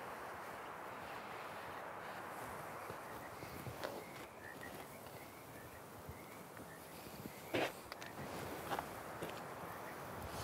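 Steel digging fork worked into loose garden soil, stepped down and rocked forward and back: a low, steady crunching and scraping of soil. A few brief sharp sounds stand out, the clearest about seven and a half seconds in.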